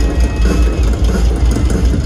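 Amplified rock drum kit in a live drum solo, played as a fast run of bass-drum beats that blur into a dense, steady low rumble.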